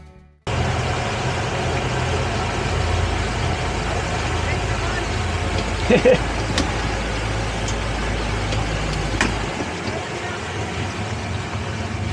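Boat's outboard engine running steady underway, with wind and water rushing past. The deepest rumble drops away about nine seconds in.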